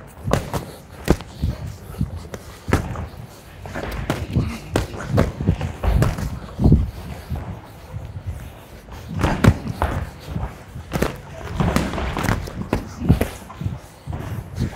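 Boxing gloves landing on gloves and guarding arms in light sparring: a string of irregular sharp thuds, at times two or three in quick succession.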